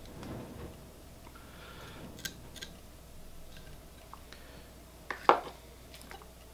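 Quiet handling sounds of fly tying at the vise: a few light, sharp clicks and taps of the thread bobbin and tools, with a louder click about five seconds in.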